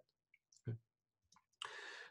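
Near silence broken by a few faint clicks and a quiet spoken "okay" about two-thirds of a second in, then a short breath near the end.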